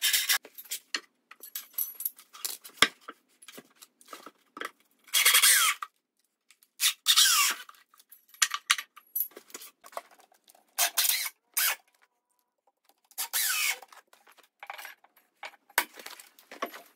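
Choppy work sounds from a wooden riser frame being built: several short bursts of a power drill driving screws into lumber, between knocks and rubbing of boards being handled.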